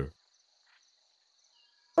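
A faint, steady, high-pitched insect-like chirring bed under a near-silent pause; a spoken word trails off right at the start.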